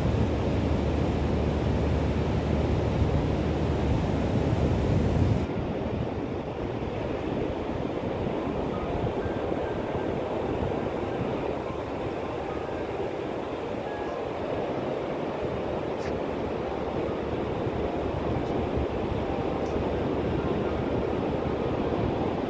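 Steady wash of surf with wind rumbling on the microphone. The rumble drops away suddenly about five and a half seconds in, leaving a lighter, even sea noise.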